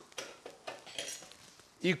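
A few faint, scattered clicks and light metallic clinks as a pair of kitchen scissors is picked up and handled at a steel counter.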